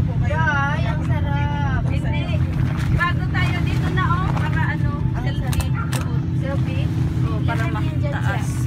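People's voices, talking and exclaiming, over a steady low hum that runs underneath throughout.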